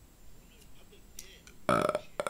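A faint pause with low room tone and a tiny click, then near the end a man's short, low hesitant "uh" into the microphone.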